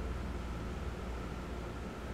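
Electric box fan running with a steady whir and a low hum.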